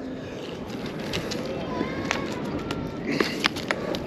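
Steady wind and surf noise over the pier, then a cluster of sharp taps near the end as a freshly landed Spanish mackerel hits and flops on the wooden deck planks.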